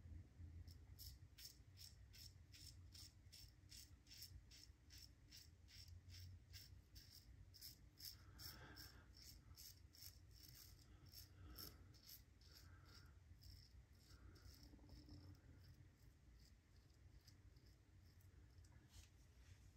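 Fine DE5 double-edge safety razor with a Feather blade cutting about two and a half days of lathered stubble on the neck: faint, short scraping strokes repeating about twice a second.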